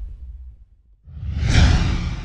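Intro whoosh sound effects with a deep low rumble under them. One fades away in the first half second, then after a brief near-silent gap a second whoosh swells up and peaks shortly before the end.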